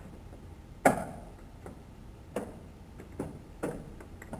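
Keys struck one at a time on a computer keyboard: about five separate clacks at uneven intervals, the first, about a second in, the loudest.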